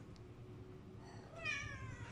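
Domestic cat meowing once, a short call that falls in pitch, about a second and a half in.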